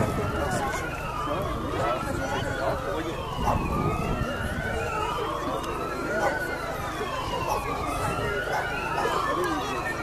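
Wailing siren of an approaching red emergency vehicle, rising and falling in pitch about every two seconds, with overlapping wails throughout.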